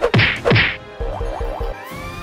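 Two loud cartoon whack sound effects in quick succession, each with a steeply falling pitch. They are followed by a quick run of short rising chirps and a rising glide near the end.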